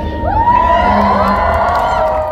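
Concert audience cheering, many high voices shouting and whooping at once, swelling about half a second in.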